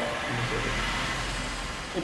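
A pause in speech filled by a low, steady hum with light hiss: the background room tone.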